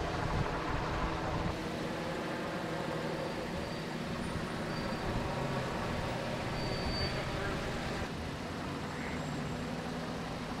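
Steady motor vehicle engine noise with a low, even hum and faint traffic.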